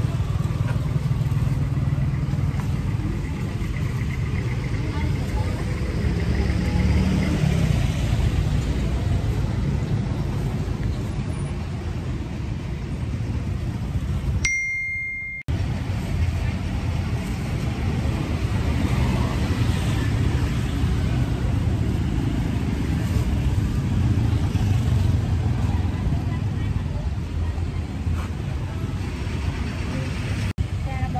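Busy street-market ambience: a steady wash of voices and road traffic. The sound cuts out for about a second halfway through.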